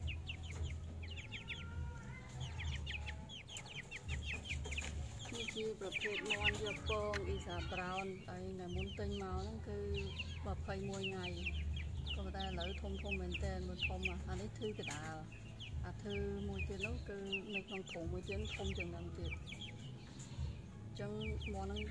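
Half-grown young chickens calling throughout: quick high peeps, several a second, with lower wavering clucking calls joining in from about five seconds on.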